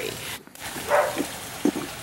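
A dog's short vocal sound about a second in.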